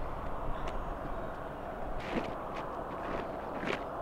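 A few separate footsteps and shoe scuffs on asphalt, about a second and a half apart, over a steady outdoor background hiss.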